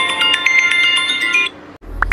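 Phone alarm ringing with a quick chiming melody of short bright notes, cutting off about one and a half seconds in.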